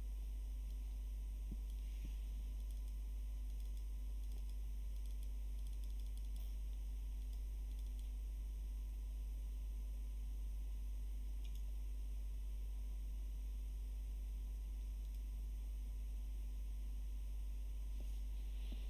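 Steady low electrical hum and hiss, with a few faint computer mouse clicks, two near the start and one later.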